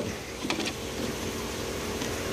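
A steady background hum with a few faint clicks about half a second in, from plastic PVC pipe being handled.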